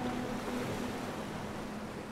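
Surf from small waves breaking on a sandy beach, a steady wash of noise, with a faint held note of music fading out under it in the first part.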